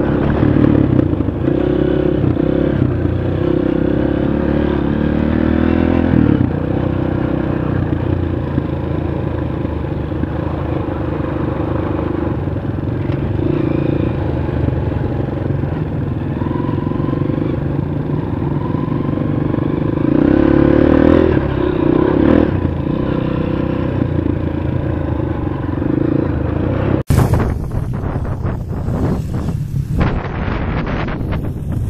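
Honda CRF230 single-cylinder four-stroke trail-bike engine heard from on the bike, its revs rising and falling as it rides the dirt track. Near the end the sound changes abruptly to wind buffeting the microphone.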